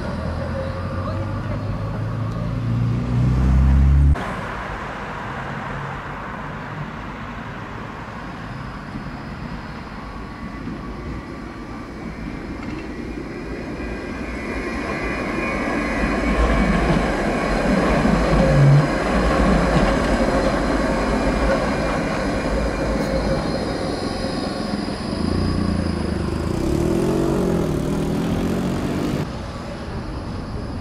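Low-floor articulated trams running on street track, with steady rolling of wheels on rail. About halfway through, one grows louder as it passes close by, with a whine that rises and falls, then fades.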